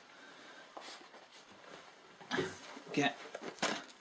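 Quiet room tone with a single light click about a second in, then a man's low, mumbled speech over the last second and a half.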